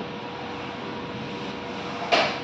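Steady background noise with a faint constant hum running through it, and no distinct events.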